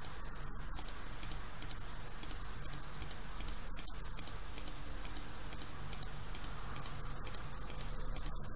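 A steady run of faint, evenly spaced computer-mouse clicks, about two a second, as list items are selected one by one. They sit over a constant low hum and hiss from the recording.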